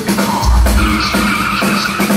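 Loud live industrial metal from a rock band: drums, a heavy low bass note struck about every two seconds, and a high squealing tone held over it.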